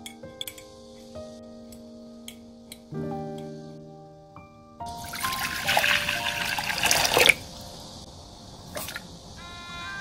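Water poured in a stream into a saucepan for about two and a half seconds, over soft background music.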